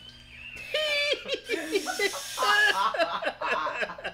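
People laughing in high, wavering voices, several at once, starting about half a second in.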